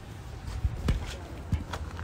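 Footsteps and phone-handling noise over a low outdoor rumble, with a few soft knocks.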